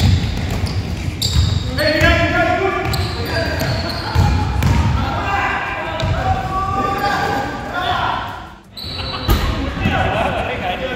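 A basketball bouncing on a hardwood gym floor, with players' voices calling out and short sneaker squeaks, all echoing in a large gymnasium. The sound dips briefly near the end.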